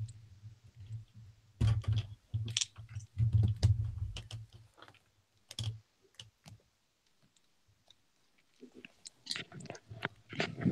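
Handling noise from wired earbud headphones being untangled and fitted close to a desk microphone: scattered clicks and rubbing of the cord, with low bumps, busiest in the first six seconds, then a few more clicks near the end.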